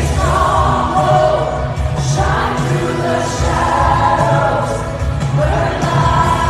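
A live worship song through the venue's sound system: a woman's lead vocal and many voices singing along over a band with heavy bass, in sustained sung phrases.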